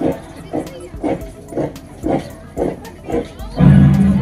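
Recorded drama soundtrack played over loudspeakers: a short voice-like sound repeated about twice a second, seven times, then a louder sustained low sound near the end.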